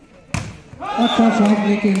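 A single sharp smack of a volleyball being struck about a third of a second in, followed by loud shouting voices.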